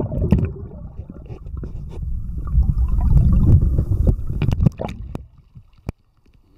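Low, muffled churning and sloshing of creek water around a camera held underwater, with scattered knocks and scrapes. It dies away about five seconds in, and a single sharp click follows near the end.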